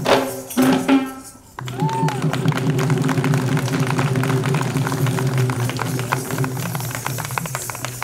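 Kandyan drumming on geta bera barrel drums, rapid dense strokes accompanying dancers. The sound drops away briefly about a second and a half in, then the drumming carries on steadily.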